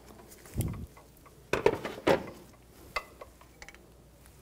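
Scattered metal clinks and knocks from a ratchet extension and spark plug socket as a loosened spark plug is backed out and drawn up its plug tube, with a denser cluster of knocks in the middle.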